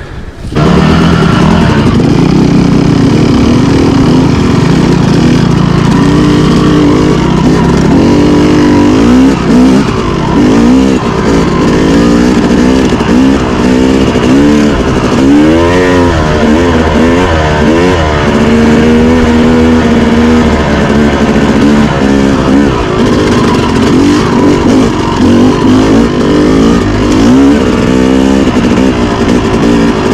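Yamaha YZ250 two-stroke dirt bike engine, loud from about half a second in, revving up and down under load, its pitch rising and falling again and again while riding single track.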